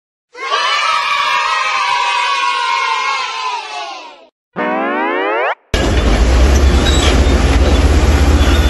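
A cheering, shouting crowd of children fades out over about four seconds, followed by a short rising cartoon whistle glide. About six seconds in, the steady low rumble of heavy diesel machinery at work, a crawler bulldozer among excavators, cuts in and carries on.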